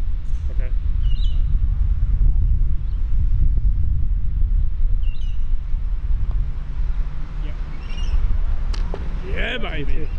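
Steady low wind rumble on the microphone, with faint bird chirps now and then. A single sharp click comes near the end, followed by a short shout.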